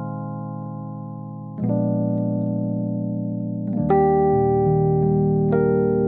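Sonuscore RO•KI sampled electric piano playing slow sustained chords. A Bb9sus4 chord rings and fades, then new chords are struck about a second and a half in and again near four seconds, with another note added later, moving toward E-flat major 7.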